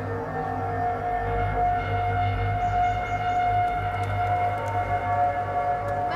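Ambient background music: long held tones over a low bass.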